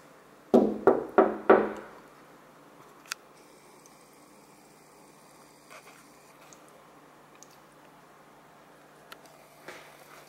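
A dog barking four times in quick succession about half a second in, the barks loud and close together.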